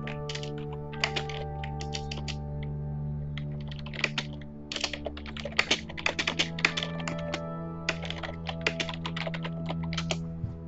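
Bursts of rapid computer-keyboard clicking, busiest in the second half, over soft ambient background music with long sustained tones.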